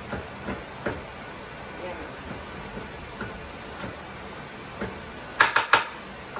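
Kitchen knife cutting cabbage on a wooden cutting board: scattered single knocks of the blade on the board, then a quick run of about four louder chops near the end.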